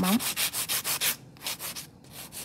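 Hand nail file rasping quickly back and forth on a long stiletto artificial nail, about ten short strokes a second. The file is shaping the underside of the nail. The strokes pause briefly a little past halfway, then resume more softly.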